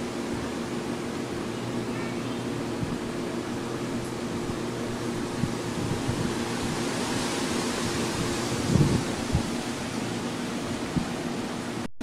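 Steady hiss with a low hum from a home camcorder's soundtrack while it is carried and swung around, with a few handling bumps about nine seconds in. The sound cuts out completely for an instant just before the end.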